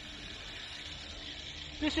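Water running steadily from a garden hose wand into a plastic five-gallon bucket as it fills.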